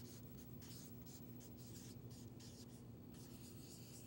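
Faint strokes of a felt-tip marker on paper as a word is written out letter by letter and underlined with a wavy line, over a faint steady hum.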